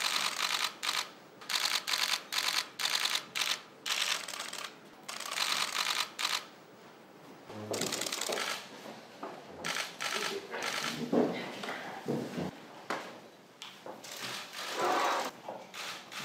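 Press camera shutters firing in rapid bursts of clicks for about six seconds. After that come softer sounds of low voices and people moving about.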